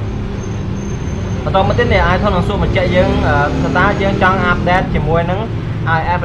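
A person talking from about a second and a half in, over a steady low rumble of background noise.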